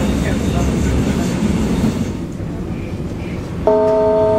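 Vienna U-Bahn train running, heard from inside the carriage as a steady low rumble. Near the end a louder chord of steady tones starts suddenly.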